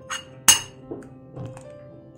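A sharp clink of kitchenware against the stainless-steel soup pot about half a second in, followed by a few lighter knocks, as chopped garlic and greens are tipped in from a plate. Faint background music underneath.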